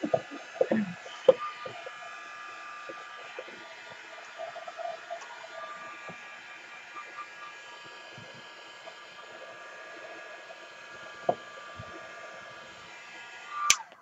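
Handheld heat gun blowing steadily, drying gel medium on a papier-mâché star, with a few light handling clicks; it is switched off with a click near the end.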